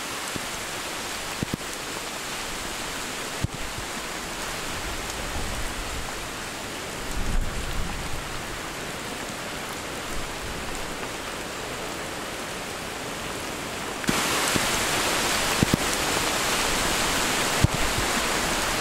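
Steady hurricane rain falling through trees, with a low rumble of wind around seven seconds in. About fourteen seconds in it suddenly becomes louder and closer, with a few sharp ticks of drops, as rain on an umbrella held overhead.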